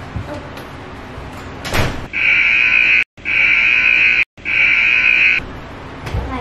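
A sharp knock, then three loud buzzer-like alarm blasts of about a second each, every one cut off abruptly with dead silence between: an edited-in alarm sound effect.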